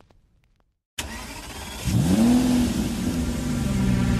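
A moment of silence, then about a second in a sudden rush of noise and a car engine revving up sharply and holding at high revs: a recorded engine sample opening a bass-boosted electronic track.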